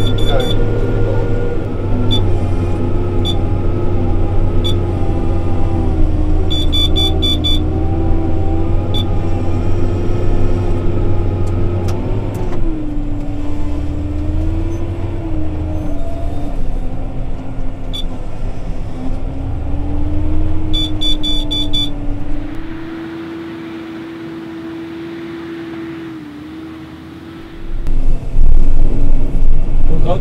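John Deere 6R tractor engine heard from inside the cab, working under load with its note rising and falling as the load changes, dipping about twelve seconds in. Short electronic beeps from the cab controls come singly and in quick clusters. The sound drops quieter for a few seconds near the end, then comes back loud.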